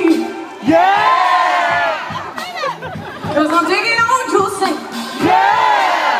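Live concert sound: a woman singing long notes that rise and fall, with the audience around her singing along and cheering.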